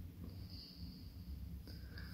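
Quiet room tone: a faint steady low hum, with a faint high whine that comes and goes.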